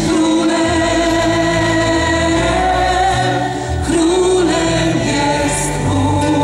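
Live Christian worship band playing through a stage PA, with singers holding long, sustained notes over a steady low bass line.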